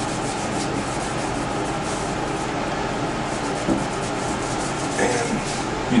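Acetone-dampened cotton pad rubbing across a drilled circuit board, a steady scrubbing sound, wiping excess conductive ink off the board's surface.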